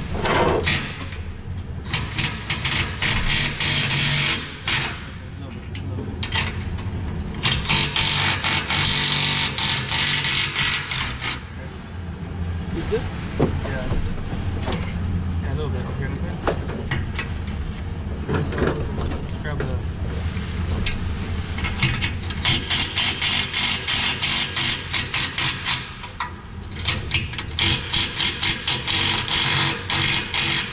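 A cordless impact driver hammering bolts home in four runs of about three to four seconds each, over a steady low hum.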